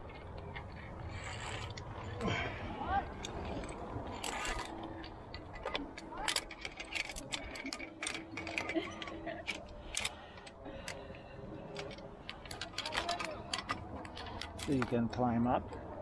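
Via ferrata lanyard carabiners clicking and scraping on the steel safety cable: a string of irregular sharp metal clicks, with the rustle of harness gear as the climber moves.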